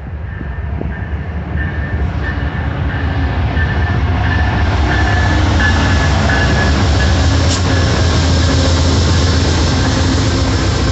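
Amtrak passenger train led by two GE P42DC diesel-electric locomotives approaching and passing close by, its engines and wheels on the rails growing louder over the first five seconds and then holding steady. An on-and-off high squeal sounds in the first four seconds.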